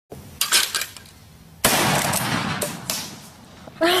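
A long gun fires a single shot about a second and a half in: a sudden loud report that stays loud for about a second before dying away. A few sharp clicks come before the shot.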